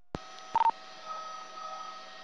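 Police two-way radio channel opening for a transmission: a click, a short beep about half a second in, then the open channel's steady hiss and faint hum.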